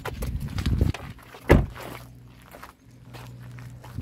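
Rustling and bumping for about a second, then the Alfa Romeo Giulietta's car door shut with one loud thump about one and a half seconds in, followed by footsteps on a dirt and gravel lot.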